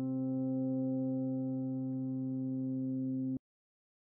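A steady electronic drone note with overtones, held without change, then cutting off abruptly about three and a half seconds in, leaving silence.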